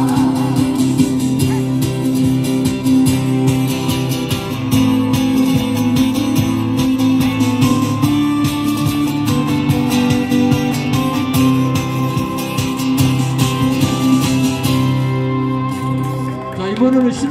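Acoustic guitar strumming through an instrumental passage of a song, over steady held low accompaniment notes, with little or no singing.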